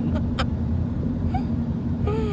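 Steady low rumble of a car's cabin, with a steady hum running under it, heard from the back seat. A short laugh comes just after the start.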